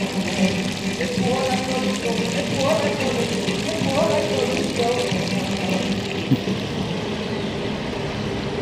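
Stone plaza fountain splashing steadily into its basin, with people's voices talking over it and a single sharp click about six seconds in.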